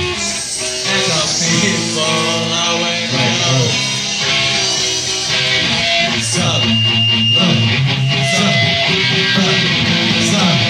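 Three-piece punk rock band playing live: electric guitar, bass guitar and drums.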